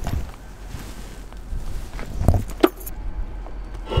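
Footsteps and handling clatter as an electric skateboard is carried along, with two sharp knocks a little past two seconds in.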